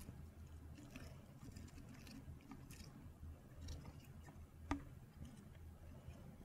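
Faint handling noise of a spinach leaf being pushed through the neck of a clear plastic bottle: soft crinkles and light ticks, with one sharper click about three-quarters of the way through, over a low steady hum.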